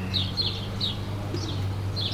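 Birds chirping, several short high calls spread through the couple of seconds, over a steady low hum.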